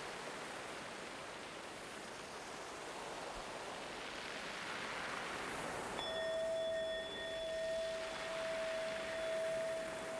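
A soft, even wash of noise like distant surf, then about six seconds in a single bell-like tone strikes and rings on steadily, swelling and dipping gently.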